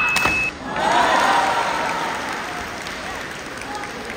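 Audience applauding with cheering voices, swelling about a second in and slowly fading.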